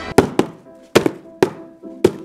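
A quick series of about five sharp thwacks, landing unevenly in close pairs with short gaps.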